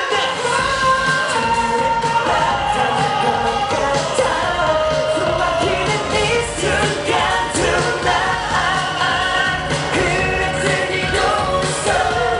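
K-pop boy band singing live over a loud pop backing track with a steady dance beat, heard through the concert loudspeakers. The sung melody runs without a break.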